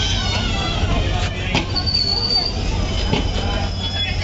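Indian Railways passenger coaches rolling slowly past a platform as the express arrives: a steady low rumble with sharp wheel clicks over the rail joints. A brief high-pitched wheel squeal comes about two seconds in.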